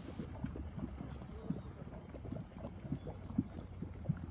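Mud pot bubbling: thick grey mud plopping in many soft, irregular pops over a low steady rumble.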